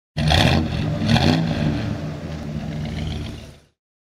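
Car engine revved twice in quick succession, then running on and fading out.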